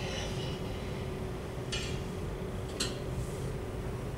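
Steady low room hum with a faint electrical tone from the classroom projector setup. A short hiss comes about two seconds in, and a single sharp click follows just before three seconds.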